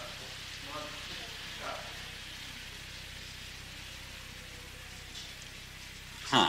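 A pause in speech filled by the steady hiss and low hum of an old lecture recording, with a faint brief murmur of a voice about a second in.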